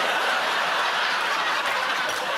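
A studio audience laughing together, loud and steady, with no words over it.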